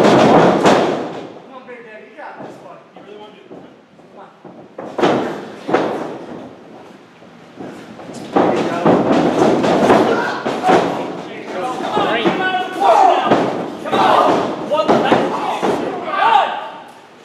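Thuds and slams of wrestlers' bodies hitting a wrestling ring's mat, with sharp impacts near the start and about five and six seconds in, among shouting voices.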